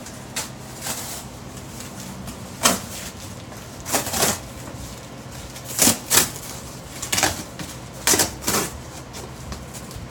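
A cardboard shipping box being handled and torn open: irregular scrapes, rustles and rips of cardboard, with the foam-wrapped inner package rubbing against it, in about a dozen short bursts.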